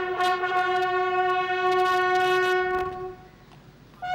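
Several military bugles in unison hold one long note of a ceremonial bugle call, which fades out about three seconds in.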